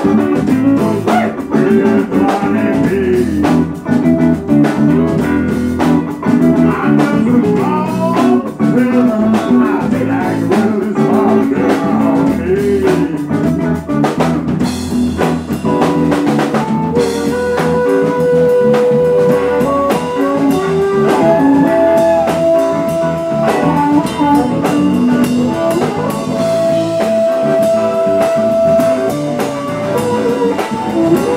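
Live electric blues band: electric guitars and a drum kit playing a blues. In the second half a harmonica played into a microphone holds long notes, some of them bent.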